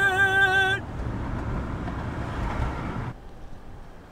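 A woman's drawn-out vocal whoop for the first moment, then the steady road and engine noise heard inside the cab of a moving camper van, which drops away to a quieter background a little after three seconds.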